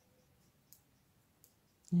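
Two faint, light clicks, about a second apart, of a metal crochet hook against long acrylic fingernails as the hands work the thread; a woman's voice begins right at the end.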